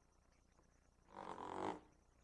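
Chalk drawing a curve on a blackboard: one short, faint scraping stroke lasting about half a second, starting a little past the middle.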